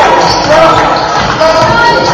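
Basketball dribbled on a hardwood gym floor during live play, with short high sneaker squeaks and voices echoing in the hall.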